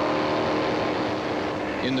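Car-chase sound from a film soundtrack: vehicle engines running hard at speed, a steady mix of engine tones and rushing noise. A man's voice starts just at the end.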